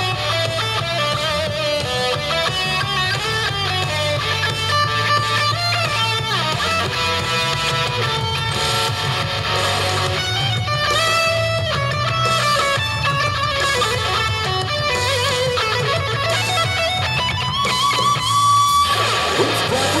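Amplified electric guitar playing a melodic lead line with string bends during the instrumental break of a rock song, over backing music. Singing comes in at the very end.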